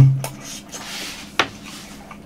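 Chewing a mouthful of crispy breaded twisted-dough hot dog: soft, faint crunching and mouth sounds, with one sharp click about one and a half seconds in. It opens with a brief hummed "mm" of approval.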